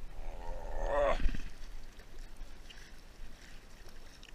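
A man's loud wordless shout, rising and breaking off about a second in, as a hooked hammerhead shark fights at the kayak's side.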